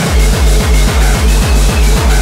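Gabber hardcore track: a fast, heavily distorted kick drum hitting several times a second, each kick sliding down in pitch, with faint steady synth tones above.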